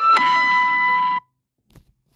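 Mobile phone ringtone playing a melody of held chiming notes, which cuts off abruptly just over a second in as the incoming call is answered or silenced.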